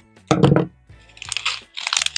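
Thin, flimsy plastic cup crunching and crinkling as it is snipped with scissors and pulled apart from around damp sphagnum moss. The loudest crunch comes about half a second in, followed by softer crackling near the end.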